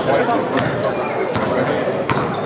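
Basketball game sounds in a large gym: a ball bouncing a few times and sneakers squeaking on the hardwood court, with players' and spectators' voices in the background.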